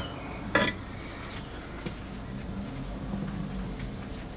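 Quiet handling sounds of soldering on a circuit board: a brief rustle about half a second in and a few light clicks over a faint low hum.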